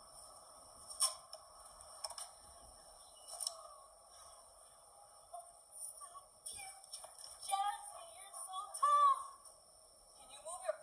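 Muffled, tinny voices playing through a screen's small speaker over a steady hiss, with a few sharp knocks in the first seconds, then excited talk and a loud cry near the end.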